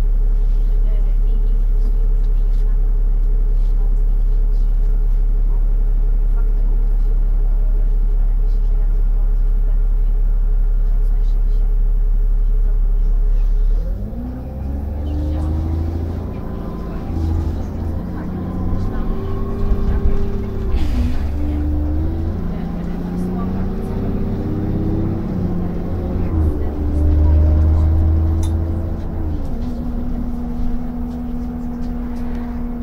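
A single-deck bus's diesel engine idles steadily with a deep hum while the bus stands. About halfway through the bus pulls away, and the engine note climbs and drops back several times as the gearbox shifts up through the gears.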